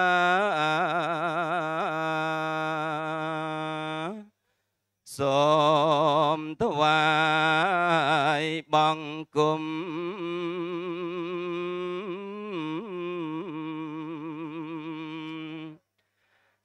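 Male voice chanting Pali in Cambodian style, long drawn-out melodic phrases with a wavering pitch on each held note. The chant pauses for about a second, four seconds in, and breaks off briefly a few more times before stopping near the end.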